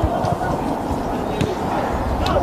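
Football pitch ambience: distant players' shouts and calls over a steady background hiss, with a sharp knock about a second and a half in.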